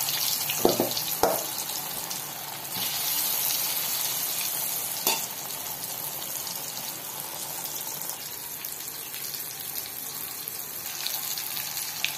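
Rice-flour-coated yam pieces deep-frying in hot oil in a kadai: a steady sizzle with fine crackling. A couple of sharp clicks come about a second in and another near the middle.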